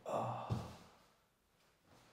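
A man sighing out a long breath, with a short thud on the laminate floor about half a second in.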